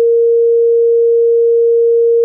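A steady sine-wave beep, one unbroken mid-pitched tone, played back from a 32-bit WAV test file by a Rust rodio playback program.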